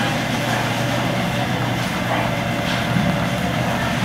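Steady low mechanical hum of running machinery, even in level with no starts or stops.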